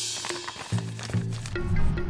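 Background music with low, plucked-sounding notes. A short hissing whoosh starts it off and fades away within about a second.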